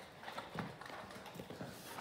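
Faint, irregular clicks and light knocks of movement on a concrete kennel floor, such as dogs' claws and footsteps.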